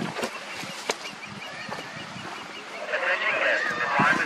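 Osprey calling: a quick run of short, high chirps repeated several times a second through the first half. About three seconds in, a louder jumbled noise takes over.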